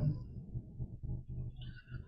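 A pause in speech: the tail of a drawn-out spoken "um" right at the start, then low steady room hum with faint small noises until the end.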